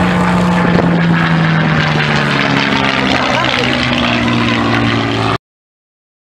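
Messerschmitt Bf 108 Taifun's piston engine and propeller running loud as the aircraft rolls along the runway, the engine note dropping slightly in pitch over the first few seconds. The sound cuts off suddenly a little after five seconds.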